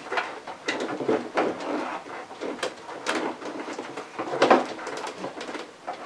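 Irregular clicks, clunks and rattles from the wearable suit's metal frame and knee-joint latches as the wearer shifts in it and works the latches to get out.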